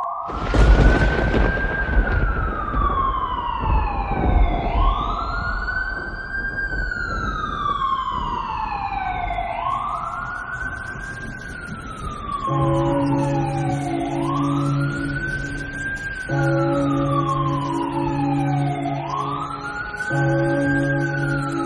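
An emergency siren wailing in slow cycles, each rising quickly and then falling slowly, about every four and a half seconds. A deep boom with a rush of noise hits about half a second in, and a sustained low synth chord comes in past the middle, broken briefly a few seconds later.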